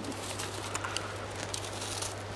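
A few faint clicks of hand pruning snips cutting a chilli plant's stems, over a steady low hum.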